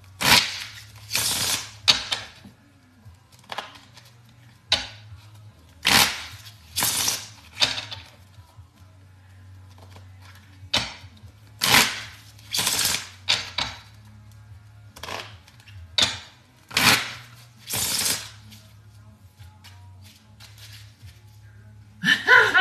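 A deck of playing cards being riffle-shuffled on a table, over and over: each riffle a brief crackling flutter, coming in runs of two or three with short pauses between, over a low steady hum.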